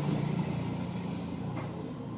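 Epson L3210 flatbed scanner running a preview scan: the scan carriage motor hums steadily, growing slightly quieter.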